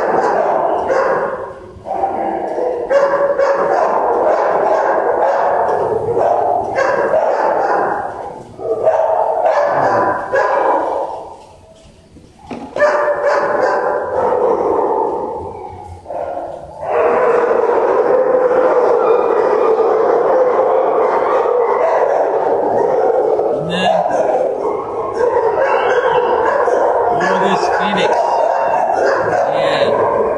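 Many shelter dogs barking and yipping in the kennel runs, going on almost without a break and easing off briefly about twelve seconds in.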